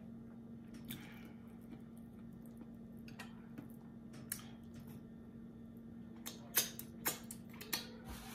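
Quiet mouth-closed chewing of a bite of pork roast with gristle in it: soft scattered wet clicks from the mouth, a few louder ones near the end, over a steady low hum.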